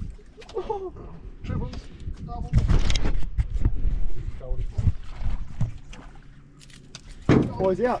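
Indistinct voices on a small fishing boat, with wind and water noise and a louder rush of noise around the middle. A low steady hum from the boat runs underneath in the second half.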